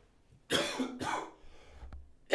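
A man coughing into his fist: a sharp cough about half a second in, then a weaker second cough.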